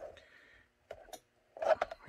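A few faint clicks and taps from a gun mold being handled in a formed Kydex holster shell and lifted out of it. The loudest cluster of taps comes just before the end.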